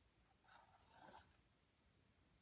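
Faint scratch of an acrylic paint marker tip drawn across canvas, one short stroke about half a second in, lasting under a second.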